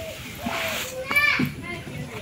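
People's voices calling out and talking, with the loudest high call just over a second in.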